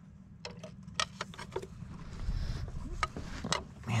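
Scattered light clicks and knocks of metal tools and engine parts being handled, as a diesel fuel pumping unit is worked against the wiring harness, over a low steady hum.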